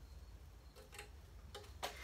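A few faint, sharp clicks, spaced unevenly, over a low steady hum.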